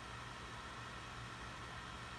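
Faint steady hiss with a low hum underneath, unchanging, with no distinct event: background room tone.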